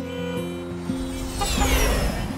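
Background music, with a jet airliner passing overhead in the second half: a low rumble and a high whine that falls in pitch.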